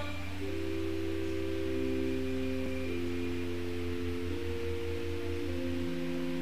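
Organ playing slow, sustained chords over a steady bass note, the notes changing every second or two.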